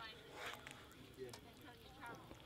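Faint scrapes and soft clicks of a metal spatula stirring a thick curry in a cast-iron Weber dish.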